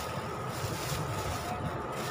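Wind blowing on the microphone: a steady low rumble with hiss.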